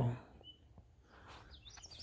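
A small bird singing outdoors: one short high chirp about half a second in, then a quick run of curved, high chirps in the last half second. Between them there is only quiet open-air background.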